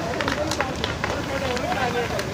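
A large fire burning with frequent sharp crackles and pops while a fire hose sprays water onto it, with people's voices in the background.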